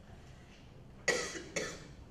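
A person coughing twice, about a second in, the two coughs half a second apart.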